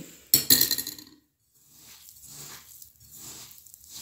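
A metal spoon clinks against the glass mixing bowl about half a second in. Then come soft, repeated squishing strokes, about one every 0.7 s, as hands knead a ricotta and coconut-flour mixture in the bowl.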